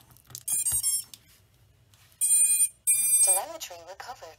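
Betafpv Pavo 25 V2 quadcopter's ESCs beeping through its brushless motors as the battery is plugged in: a quick run of short startup tones about half a second in, then two longer beeps at about two and three seconds. These are the usual power-up tones of a drone's speed controllers.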